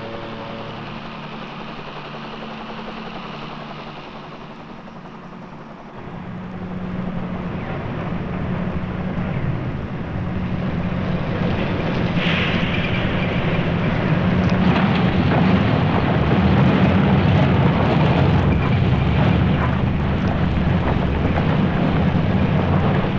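Music fades out in the first second. About six seconds in, the heavy low rumble of NASA's crawler-transporter starts and grows steadily louder: its diesel engines and massive steel tracks grinding along, with scattered clanks from the tread links.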